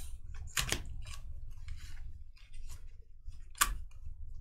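Stiff foil-finish Panini Revolution basketball cards being flipped through by hand: a series of short slides and flicks of card against card, the sharpest about half a second in and near the end.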